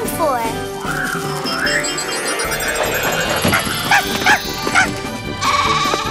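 Cartoon soundtrack music with glittering, shimmering magic-wand sparkle effects, mixed with cartoon animal calls: a goat bleating and a dog yapping, one wavering call near the end.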